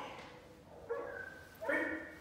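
Shepherd doodle puppy giving two short, high-pitched yips, the second louder, about a second apart.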